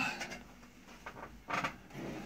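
Wooden driftwood automaton model being slid across a wooden tabletop, with a brief scrape about one and a half seconds in.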